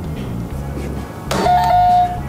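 Quiz buzzer going off about a second and a half in: a sharp chime that holds a steady bright tone for about half a second. Background music plays under it.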